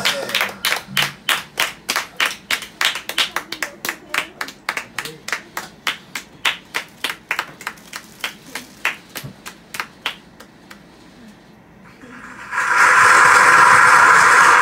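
Small audience clapping in an even rhythm, about three claps a second, fading away over about ten seconds after a song ends. About two seconds before the end a loud, steady hiss comes in.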